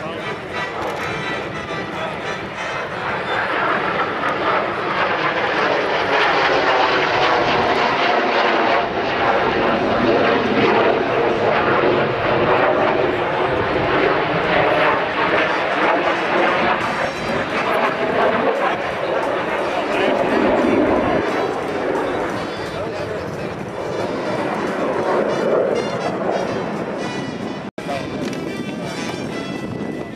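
A Learjet's jet engines roar loudly overhead during an aerobatic display. The noise swells a few seconds in and stays loud, with a slowly sweeping, phasing tone as the jet passes. It cuts out for an instant near the end.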